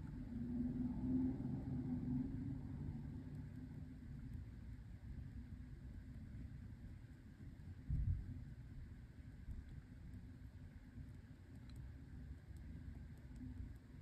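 Faint low background rumble, with one dull bump about eight seconds in.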